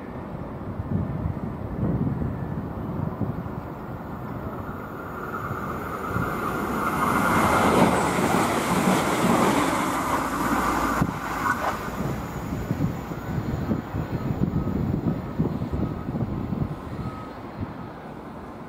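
Irish Rail 22000 Class InterCity Railcar, a diesel multiple unit, passing through the station at speed without stopping. The rumble of its engines and wheels on the rails builds, is loudest about halfway through, and then fades as the train goes by. There is a single sharp click about eleven seconds in.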